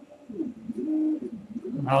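A dove cooing: a few low, rising-and-falling coos.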